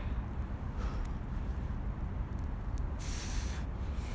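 Wind buffeting the phone's microphone outdoors, a steady low rumble, with a short sharp hiss of breath about three seconds in as the exerciser breathes out hard while holding the stretch.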